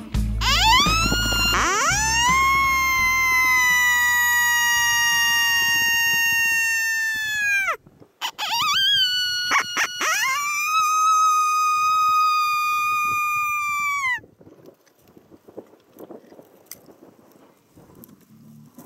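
Two long coyote howls from a predator call. Each slides up, holds steady for several seconds and drops away at the end, the second pitched a little higher than the first. Faint wind noise follows.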